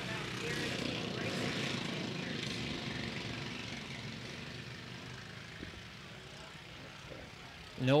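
A field of mini-modified dirt-track race cars running at racing speed in the opening lap. The engine sound swells over the first few seconds and then fades as the pack moves away around the track.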